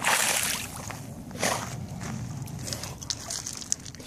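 Water splashing and sloshing as a dog paws at shallow water and dunks its head under. The loudest splash is right at the start, with a shorter one about one and a half seconds in and small drips and trickles between.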